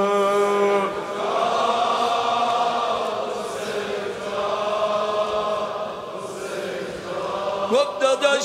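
Live Shia Muharram noha (lamentation chant): a male reciter holds one long sung note. About a second in, it gives way to a mourning crowd chanting in unison, rising and falling together. Just before the end, the solo voice comes back in with sliding, ornamented singing.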